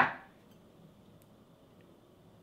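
A single sharp click right at the start, dying away within a fraction of a second, then near silence: room tone.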